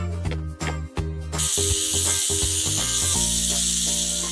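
Water spraying from a garden hose: a steady hiss that starts about a second in and keeps going, over light children's background music.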